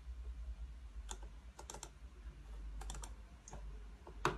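Sharp clicks in small clusters, about a second apart, from a computer mouse and keyboard being worked, over a steady low hum.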